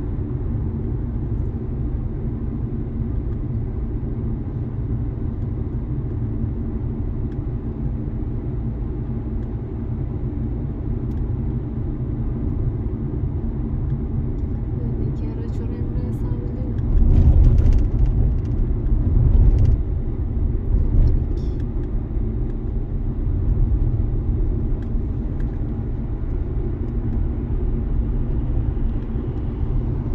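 Interior road noise of a Dacia car cruising at steady speed: a steady engine and tyre rumble heard from inside the cabin, swelling louder and lower for a few seconds just past the middle.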